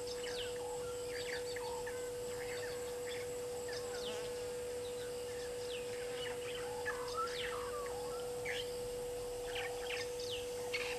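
Birds chirping in the bush, many short downward-sweeping calls scattered throughout, over a steady low hum.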